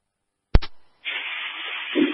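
Two-way radio: silence, then a sharp click about half a second in, followed by a steady static hiss from about a second in as a transmission opens.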